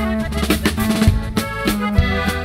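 Norteño band playing an instrumental break: a Gabbanelli button accordion carries the melody over electric bass and a drum kit keeping a steady beat.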